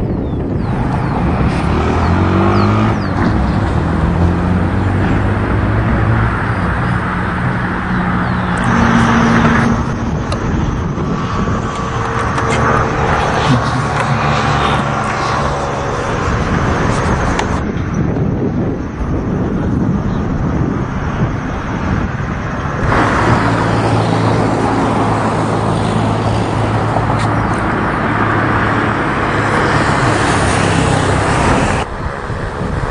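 Loud, steady outdoor rushing noise with a low engine-like hum underneath, which sounds like traffic. The mix changes abruptly a few times.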